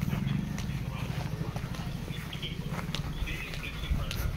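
Footsteps of several people walking on a dirt and grass path, irregular soft steps over a low rumble of the handheld phone being carried.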